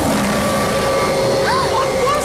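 A loud, steady machine whir with a constant hum. High, squeaky gliding voice cries come in about one and a half seconds in.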